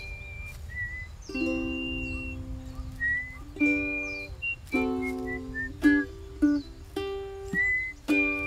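Ukulele strummed in slow chords, one every second or so, while the player whistles a melody over it, the whistled notes held and sliding between pitches.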